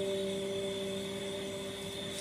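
Background music: guitar notes plucked just before ring on and slowly fade, with no new note struck.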